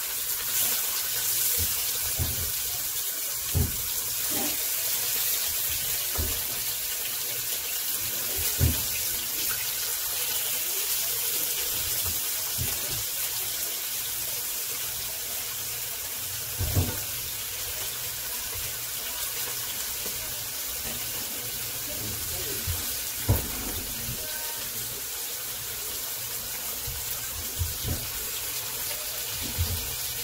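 Chicken breast pieces sizzling in hot oil on an Aroma electric grill pan, a steady hiss, with a few soft knocks as more pieces are laid on the ribbed plate.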